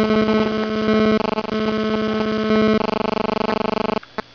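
Loud electronic buzz on one steady low pitch with many overtones, chopped into rapid stutters that settle into an even fast pulsing near the end: the pattern of GSM mobile-phone interference, the phone's radio bursts leaking into the recording's audio.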